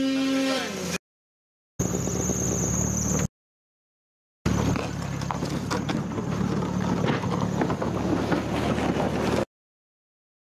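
Vehicle engine running steadily, with wind noise on the microphone, heard in short pieces broken by abrupt cuts to dead silence.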